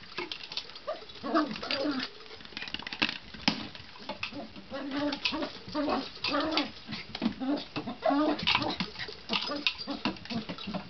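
Poodle making repeated short, low, cooing whines and grumbles while pushing a Jolly Ball around, the excited happy noises of play. Scattered short knocks sound between the calls.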